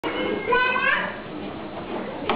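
Young children's voices in a room, with one child's high, slightly rising call about half a second in, over a general background of children's noise.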